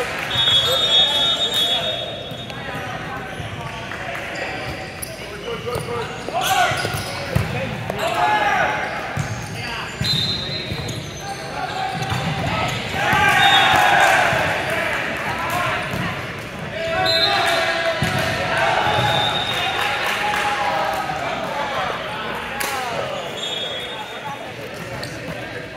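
Indoor volleyball rally: the ball struck and thumping on the court amid players' shouts and calls, with several short high squeaks, all echoing in a large gym.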